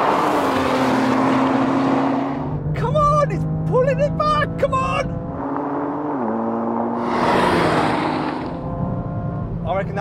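Two performance cars, a BMW M3 CS and an Audi RS4, running flat out at the top of a drag race. A car rushes past close by in the first couple of seconds and again around seven to eight seconds, and the engine note drops sharply a little after six seconds.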